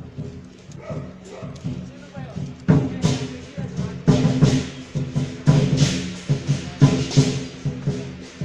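Chinese lion dance percussion: drum, cymbals and gong. Quiet at first, then loud repeated crashes set in about three seconds in and keep up an uneven beat.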